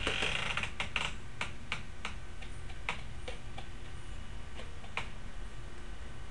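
Irregular sharp plastic clicks and taps, a few a second at first and sparser later, as a plastic deli cup is knocked and tapped to empty out its debris.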